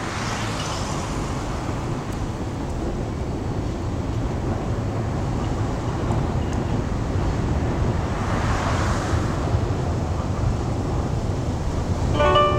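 Steady outdoor road-traffic noise with a low rumble, swelling as vehicles pass, once at the start and again around eight to nine seconds in.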